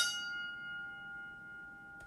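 A single bell-like chime sound effect, struck once and ringing with several clear tones that fade away over about two seconds.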